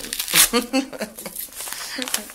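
A yellow paper padded envelope being torn open by hand: paper ripping and crinkling in short sharp bursts, the loudest tear about half a second in.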